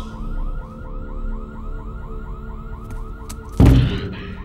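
A rapid electronic warning alarm, a rising chirp repeating about six times a second, over a low rumble. A loud thud comes near the end.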